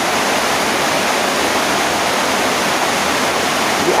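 Steady, even hiss of noise with no change in level; nothing else is heard.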